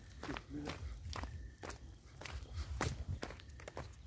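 Footsteps crunching through dry leaf litter and twigs, several uneven steps and crackles.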